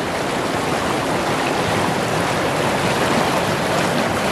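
River rapids rushing steadily over rocks, heard close to the microphone as the white water churns around it.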